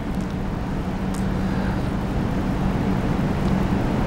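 A steady low hum over a constant low rumble of background noise, with a faint click about a second in.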